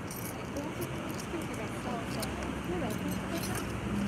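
Steady city-street background noise with faint voices in the distance and a few light clicks.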